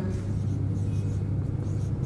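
A steady low hum, with faint strokes of a marker writing on a whiteboard.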